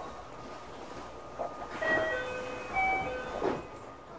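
A train moving slowly on a nearby station track: a low rumble with a few knocks, and short squeals at several different pitches through the middle seconds.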